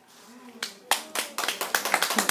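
A small audience of children clapping: a few scattered claps about halfway in, quickly building into applause.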